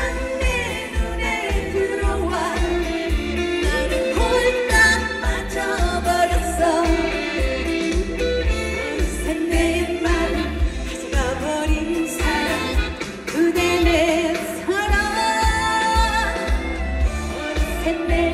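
A woman singing a trot song live into a microphone over backing music with a steady, pulsing bass beat.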